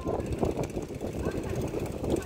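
Wind buffeting a phone's microphone and rattling from a moving bicycle: an irregular rumble with many small knocks.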